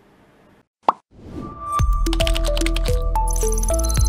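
A single sharp pop, then a swell leading into the TV station's closing jingle, which has a steady bass under a melody of short stepped notes and starts about two seconds in.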